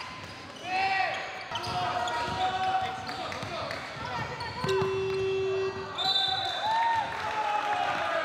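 Basketball game sounds in a gym: sneakers squeaking on the hardwood court and the ball bouncing. About five seconds in, a steady buzzer sounds for about a second, the horn ending the second quarter.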